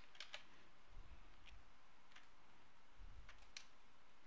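Quiet room with about half a dozen faint, scattered clicks from computer keys or buttons being pressed.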